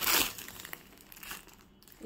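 Clear plastic packaging crinkling as packed suits are handled, loudest in the first half-second and then dying away to faint crackles.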